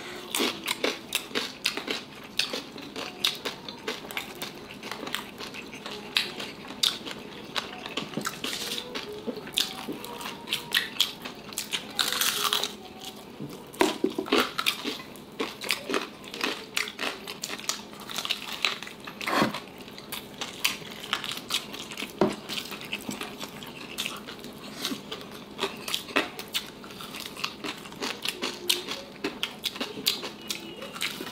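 Close-up crunching and chewing of crispy fried pork knuckle (crispy pata) skin, many short sharp crackles scattered throughout, with a longer burst of crackling about twelve seconds in.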